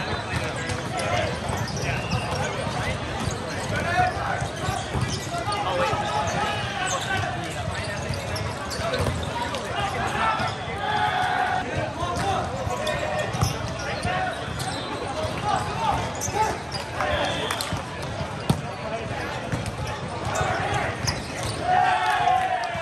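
Volleyball tournament hall din: many players' voices calling and shouting over one another across several courts, with sharp slaps of volleyballs being hit and bouncing, one loud hit about 18 seconds in.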